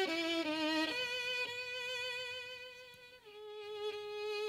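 Solo violin playing a slow melody: a few short notes in the first second, then a long held note with vibrato that steps down to a lower sustained note about three seconds in.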